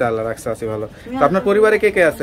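Speech: a voice talking, with a bird's cooing call behind it.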